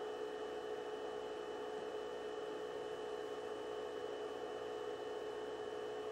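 Steady room tone: an even hum with a constant mid-pitched drone, a thin high tone and a light hiss, unchanging throughout.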